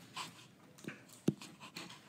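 Faint taps and light scraping of a stylus drawing on an iPad's glass screen, with one sharper tap a little past the middle.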